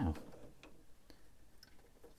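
A few faint, sparse plastic clicks as hands handle and adjust the Fans Hobby MB-16 Lightning Eagle transforming robot figure.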